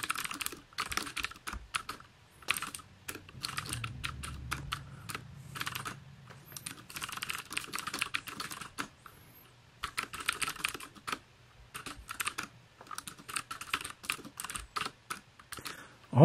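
Typing on a computer keyboard: quick runs of keystroke clicks broken by short pauses.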